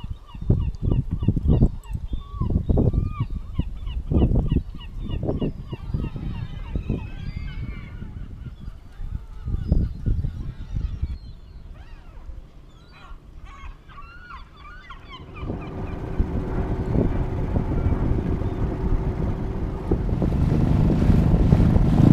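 Birds calling repeatedly over irregular low rumbles for the first several seconds. About two-thirds of the way in, a small outboard motor on an inflatable dinghy starts running steadily, and it gets louder near the end.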